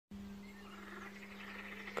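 Faint pond-side ambience: faint animal calls repeating over a steady low hum.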